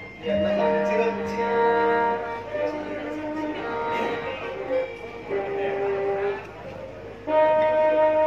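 Javanese gamelan playing a slendro pathetan: a gendèr metallophone struck with two padded mallets, its bronze notes ringing on, under other long held melodic notes. The music swells louder near the end.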